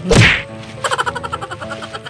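A loud whack right at the start, then background music with a quick run of ticks about a second in.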